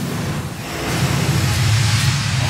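A broadcast bumper sound effect: a loud rushing whoosh of noise over a low rumble, swelling louder through the first second as the news programme's title comes on.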